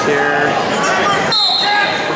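Crowd and coaches shouting in a gym. A little past halfway the voices dip and a short, steady high-pitched tone sounds.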